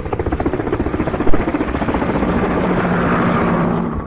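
A loud, fast mechanical rattle of many pulses a second, like a running engine or rotor. There is one sharp bang about a second and a half in.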